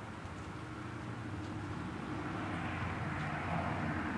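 Distant engine drone: a steady low hum that swells slightly toward the end.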